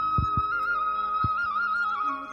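Background music led by a flute: one held note with quick trilled ornaments, over a few soft low thumps.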